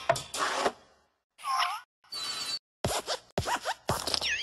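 Cartoon sound effects for the hopping desk lamp in a Pixar logo animation: short scratchy creaks and squeaks from its spring-loaded joints. They come one at a time, with a brief high squeal after two seconds and a quick run of rising squeaks and knocks near the end.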